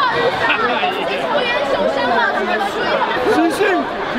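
Crowd chatter: many people talking at once, their voices overlapping.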